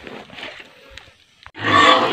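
Pigs grunting in a sudden loud burst near the end, after a quieter stretch of faint rustling from a bundle of leafy cuttings being carried.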